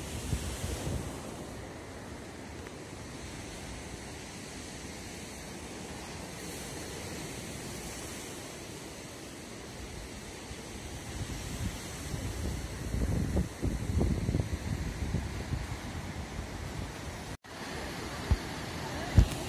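Heavy surf breaking on the shore below, a steady wash of noise, with wind gusting on the microphone over the last few seconds.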